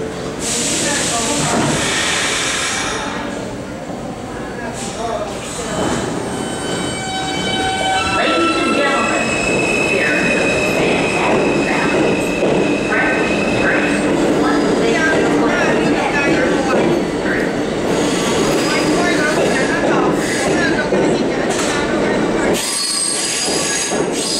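New York City Subway Kawasaki R160B train pulling out of a station. A hiss comes near the start, then the traction motors whine in tones that step upward as it picks up speed, over the rumble and squeal of its wheels on the rails.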